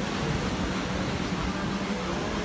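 Steady wash of sea surf from small waves breaking on the shore, with a steady low hum underneath and some low rumble on the microphone.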